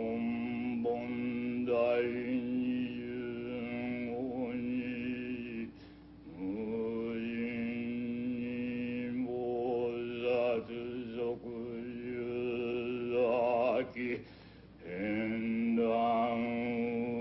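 Buddhist chanting: a single deep male voice holds long, steady notes, each phrase sliding up into its pitch. It breaks off for breath about six and fourteen and a half seconds in, and the note wavers just before the second break.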